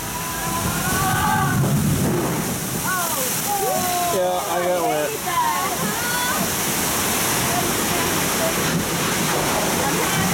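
Steady rush of water from a log flume ride's waterfall and flume channel, with indistinct voices over it for the first half.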